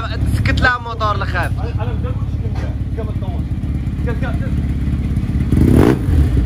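Motorcycle engine running steadily, a low drone under people talking. Near the end there is a brief louder rush.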